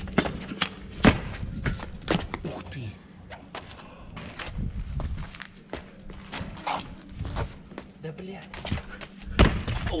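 Sneakers landing and scuffing on stone paving during parkour jumps and a low rail vault: a string of sharp thuds, the loudest about a second in and another near the end.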